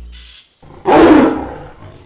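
A single loud big-cat roar, about a second long, starting just under a second in and dying away. It follows the tail of background music fading out.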